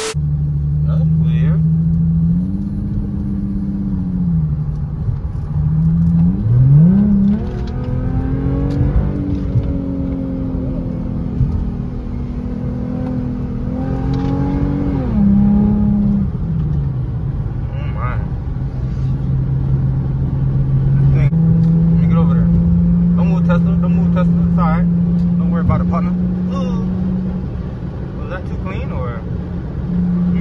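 Infiniti G35x's 3.5-litre V6 engine under way, revving up hard about six seconds in and holding high revs, easing off around fifteen seconds, then running at steady cruising revs, the pitch stepping as the automatic gearbox shifts.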